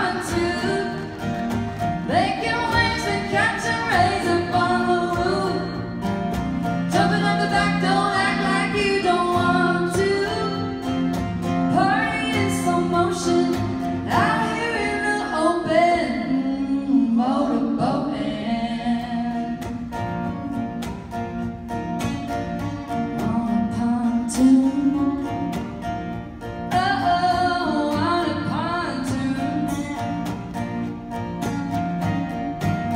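Live acoustic country song: a woman singing lead in phrases over several strummed acoustic guitars.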